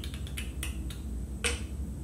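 Several small sharp plastic clicks and taps from a makeup compact being handled and opened: a quick cluster in the first second and one louder click about one and a half seconds in.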